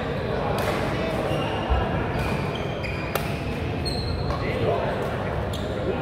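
Badminton rackets striking a shuttlecock, several sharp smacks a second or more apart, with short high squeaks of shoes on the court floor and players' voices, echoing in a large sports hall.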